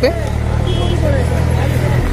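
A steady low engine hum, with other people's voices talking in the background.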